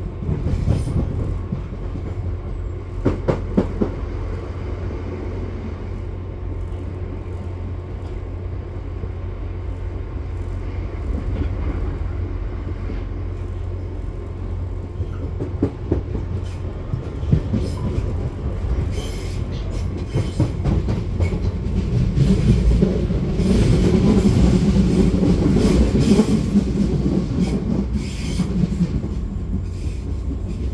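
A Class 465 Networker electric multiple unit heard from inside the passenger saloon while running: a steady low rumble with scattered clicks from the wheels on the track. It grows louder for several seconds about two-thirds of the way through.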